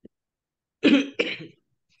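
A person clearing their throat in two short, rough coughs, one right after the other, about a second in.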